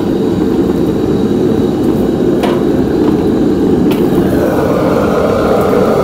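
Rabbit pieces deep-frying in a wok of hot oil, a steady bubbling and sizzling over the running noise of a commercial wok stove. A ladle clinks against the wok twice, and the sizzle turns brighter near the end as the wok is tipped to drain.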